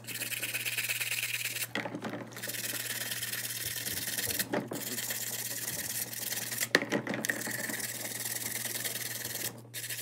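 Small bristle brush scrubbing a white plastic toy part in soapy water, a steady rubbing with short pauses about two seconds in and near the end, and a single light click about seven seconds in.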